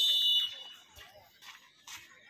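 Referee's whistle: one short, high-pitched blast of about half a second, the signal for the penalty kick to be taken.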